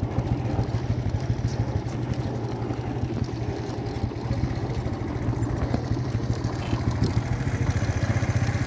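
Motorcycle engine running steadily, with an even, rapid firing pulse.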